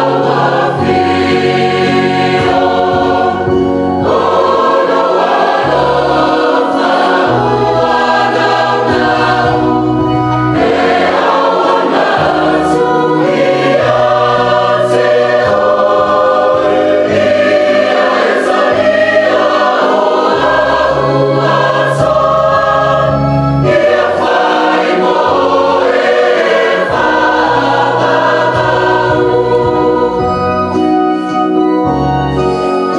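A mixed church choir of men and women sings a hymn in parts. An electronic keyboard or organ accompanies them, holding low bass notes that change every second or two.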